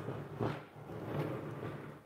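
Faint handling noise from a phone camera being moved and repositioned: soft rubbing, with a light knock about half a second in.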